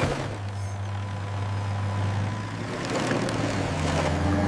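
Heavy construction-vehicle engine sound effect: a steady low engine drone with a rushing, gritty noise over it.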